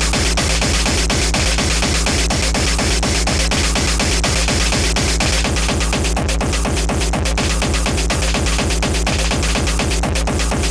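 Speedcore track: a very fast, distorted kick-drum beat under a harsh, noisy upper layer, with the upper pattern growing busier a little past halfway.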